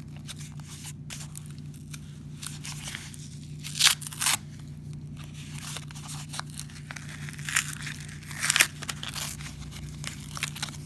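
Hands tearing open a mailing package and rustling the packaging, with louder rips about four seconds in and again about eight seconds in.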